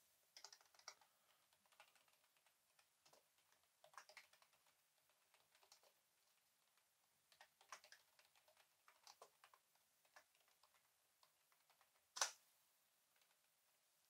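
Faint computer keyboard typing in short bursts of key clicks, with a single louder key press about twelve seconds in.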